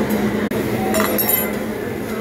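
Glassware clinking a few times, about a second in, over steady background noise with a low hum.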